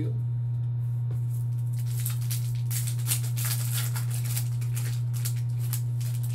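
A steady low electrical hum throughout, with crinkling and rustling from about two seconds in as a trading card pack's wrapper is handled and opened.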